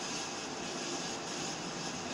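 A steady, even rushing background noise with nothing standing out, like a room fan or air conditioner running.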